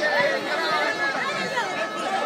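Dense crowd of many voices talking and calling out over one another at once, a continuous babble with no single speaker standing out.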